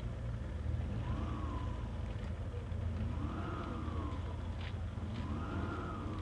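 Steady low vehicle engine rumble, with a faint tone that rises and falls about every two seconds, like a distant siren.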